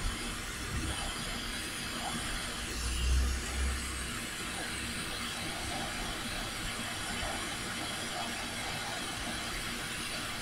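Hot air rework station blowing a steady hiss through its nozzle, heating a small surface-mount chip on a motherboard until its leaded-mixed solder melts so it can be lifted off. A brief low rumble comes about three seconds in.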